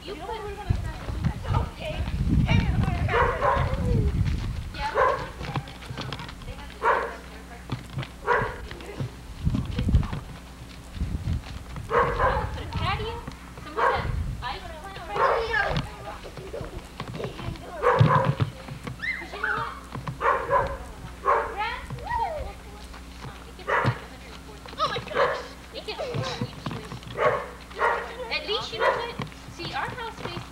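Small black puppy barking in short, high yaps, about one a second, mixed with children's voices, with a low rumble about two to four seconds in.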